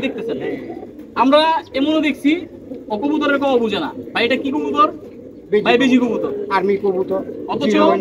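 Domestic pigeons cooing steadily under men's conversation.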